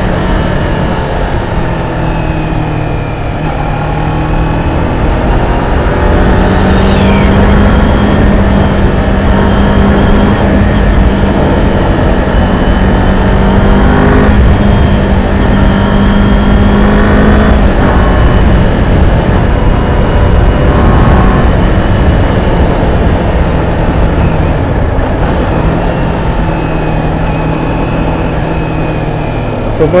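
2021 Kawasaki Ninja 400 parallel-twin engine running at highway speed, heard from the rider's seat under heavy wind noise. The engine note climbs for a stretch, eases off, then rises again as the throttle changes.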